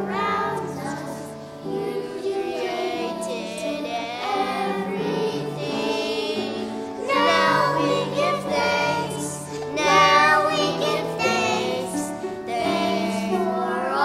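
A group of young children singing a song together into a microphone, with steady held low notes sounding beneath the voices.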